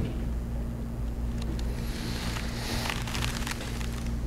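A steady low hum over faint background noise, with a few soft clicks and rustles in the second half.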